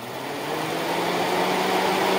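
Toyota Prius C radiator cooling fan's brushed 12-volt electric motor, fitted with new graphite brushes, spinning up under test power: a whirring hum that rises a little in pitch at the start and keeps getting louder.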